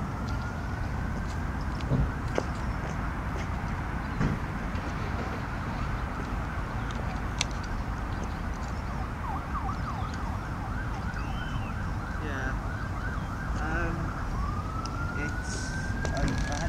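An emergency-vehicle siren: a slow wail rising and holding at the start, then fast repeated up-and-down yelps around the middle, then another slow rise and fall near the end, over a steady low background rumble.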